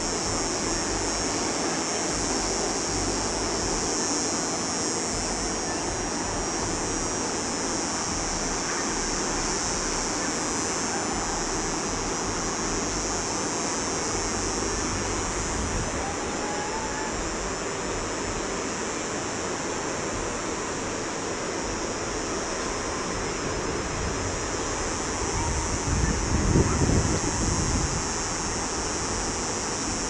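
Steady rushing of a river heard from the hillside above, with wind in the vegetation; a gust buffets the microphone with a low rumble about four seconds before the end.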